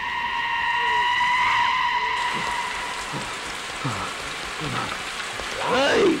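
A film soundtrack with a steady hiss throughout and a long held high tone for the first two seconds or so, then a few short falling sounds, ending in a brief pitched call.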